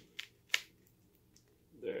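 Plastic shrink wrap on a vinyl LP crackling sharply as it is pulled open: two short crackles about a third of a second apart in the first second, the second the louder, and a faint one later.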